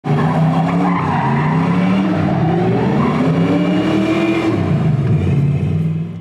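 Ford Mustang's V8 engine revving up and down under load while the rear tyres squeal and skid through a smoky donut.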